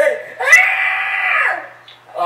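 A person screaming: one long scream that rises sharply at its start, holds for about a second, then fades away.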